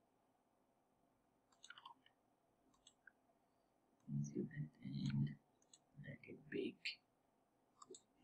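A few faint computer mouse clicks, then, about halfway through, a man's soft muttering for a few seconds.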